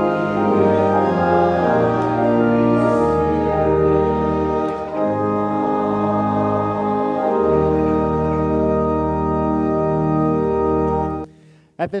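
Church organ playing slow, held chords over low bass notes, the chords changing every second or two, as the close of the Offertory; the final chord cuts off about eleven seconds in.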